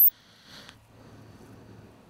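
The top of a rising sine-sweep test signal cuts off abruptly at the very start, leaving faint room noise with a low hum and a soft click about half a second in.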